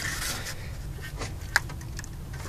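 Car engine idling with a steady low hum, and a single light click about one and a half seconds in.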